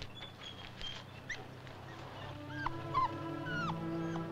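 Short, high animal calls that glide up and down in pitch, coming more often in the second half, as sustained orchestral film music swells in about halfway through.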